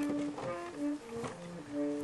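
A wind instrument playing short held notes one after another, stepping up and down in pitch, as a band warms up before playing.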